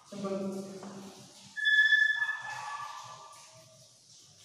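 A man's voice holding a short, steady vowel sound. Then, about a second and a half in, chalk squeaks on a blackboard: a sudden loud, high-pitched squeal that drops lower in pitch in steps and fades by the end.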